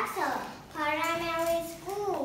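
A young girl's voice in a sing-song tone: a short falling glide, then one long held note of about a second, ending in another sliding glide.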